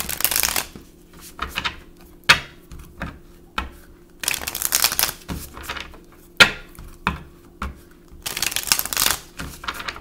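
A tarot deck being shuffled by hand: three longer rustling runs of cards about four seconds apart, with short sharp taps and slaps of the cards between them.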